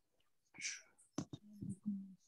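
A person's voice, faint: a short whisper or breathy sound about half a second in, two sharp clicks just after a second, then a steady low hum held near the end.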